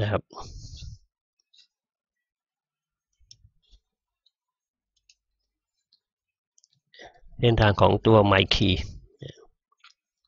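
Computer mouse clicking, a few faint single clicks in a long quiet stretch while a web page is opened and scrolled. A voice speaks briefly at the start and again for about two seconds near the end.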